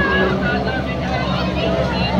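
Crowd hubbub: several voices talking at once at a distance, over a steady low hum.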